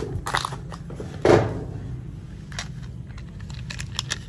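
Plastic toy cars clattering against each other and the basin as a hand rummages through them: a few knocks, the loudest about a second in, then lighter clicks near the end.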